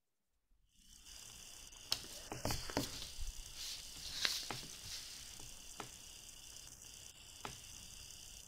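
Faint graphite pencil scratching on paper over a clipboard, with several short ticks as small division marks are drawn along a line.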